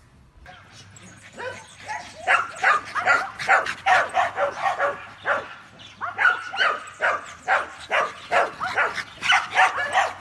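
A dog barking repeatedly in short, sharp barks, about two a second, starting a second or two in and keeping up a steady rhythm.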